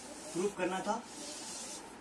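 Chalk drawn along a blackboard as lines are ruled to box in a formula: a soft, hissing scrape that runs for most of the second half, after a brief voice sound.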